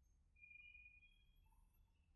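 Near silence: faint room tone, with a faint thin high tone in the first second.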